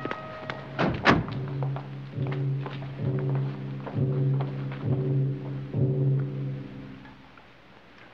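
Dramatic orchestral film score: a low note pulses about once a second with a sharp accent on each beat, then fades away near the end. About a second in there are two heavy thuds.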